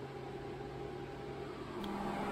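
Steady whir and hum of a running HP ProLiant DL580 G4 server's cooling fans, with one constant low tone under an even rush of air noise.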